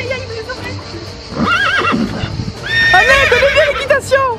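Horse whinnying twice: a short quivering call about a second and a half in, then a longer, louder one near the end.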